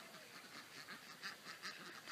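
Faint animal calls over a quiet background.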